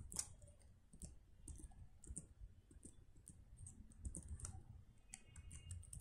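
Faint computer keyboard typing: irregular key clicks.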